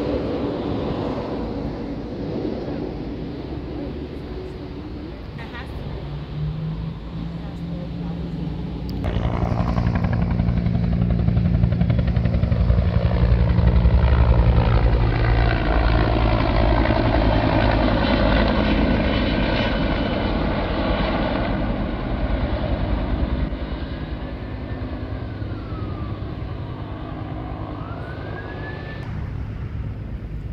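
Firefighting helicopter flying low past, its rotor and engine growing loud about nine seconds in, then falling in pitch and fading as it moves away. A whistle that rises and falls twice near the end.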